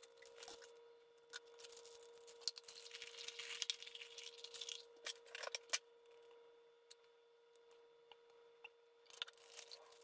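Faint rustling and crinkling of a thin plastic piping bag being handled and opened out over a cup, with a few sharp taps in the middle. It goes quiet for a few seconds, then a little more rustling comes near the end.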